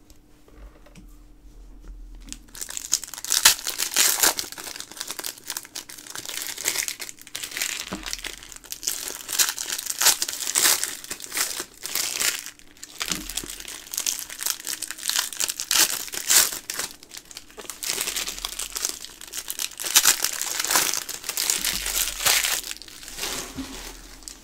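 Foil trading-card pack wrappers crinkled and torn open by hand: a dense run of crackling that starts about two seconds in and stops just before the end.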